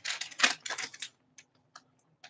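Paper being handled: a few short rustles in the first second, then a few faint ticks.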